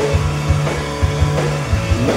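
Live indie rock band playing an instrumental passage with no vocal, carried by a steady, driving drumbeat over held bass notes.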